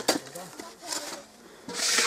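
A hand hoe chopping into dry, packed earth: one sharp strike just after the start, then a loud scrape of soil being dragged near the end.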